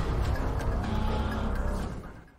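Intro sting of music with a deep rumbling sound effect, beginning to fade out near the end.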